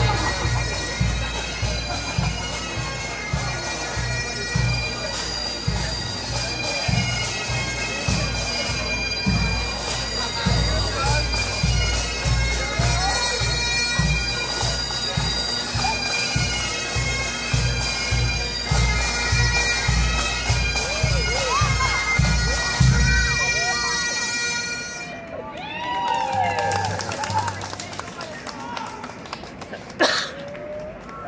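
Pipe band playing: bagpipe drones and chanter hold a steady, loud tune over regular drum beats. The music stops about 24 seconds in, and crowd voices follow.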